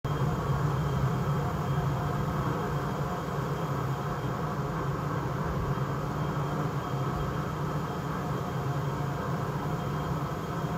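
Steady noise with its weight in a low rumble, starting abruptly and holding even throughout, with no distinct events.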